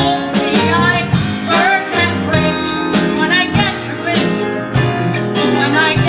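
A live band of guitar, piano, bass and drums playing a ballad, with a woman singing over it, her held notes wavering in vibrato.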